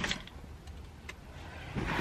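Low, steady car-cabin rumble with a couple of faint clicks.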